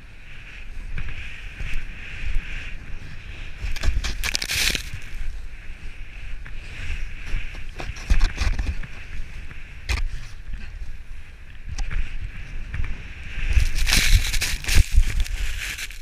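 Snowboard sliding and carving over snow: a steady hiss with low wind rumble on the microphone. Louder scraping surges come about four seconds in and again near the end, where the board throws up a spray of snow.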